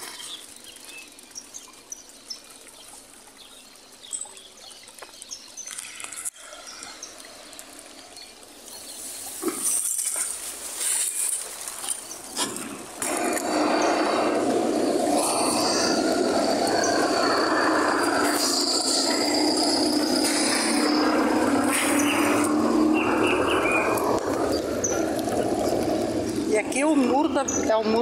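Water gushing from a leak at a water-supply wall and tank, a loud steady rush that starts about halfway through; the leak is wasting treated drinking water.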